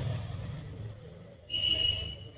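A brief high-pitched whistle, one steady tone with a hiss, starting about one and a half seconds in and lasting about a second, after a faint low hum.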